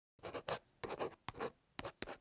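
Pen scratching across paper in a series of quick strokes, the sound of a signature being written, with a sharp tick or two between strokes.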